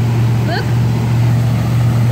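A heavy army truck's engine running with a steady low drone that swells a little at the start, over the wash of vehicles splashing through floodwater.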